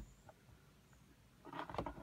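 Near quiet, then a few faint clicks and rustles in the last half second from a plastic power strip being handled and turned over in the hands.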